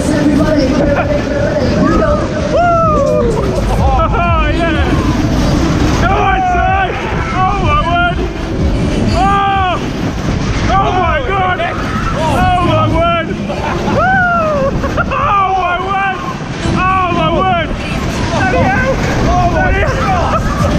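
Wind rushing over the microphone on a spinning Twist fairground ride, with riders' voices whooping in rising-and-falling cries about once a second over it.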